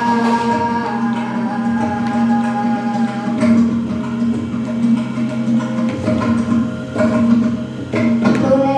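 Carnatic-style devotional song: long held melodic notes over a steady low drone.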